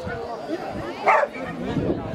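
A dog barks once, loudly, about a second in, over voices, while running an agility course.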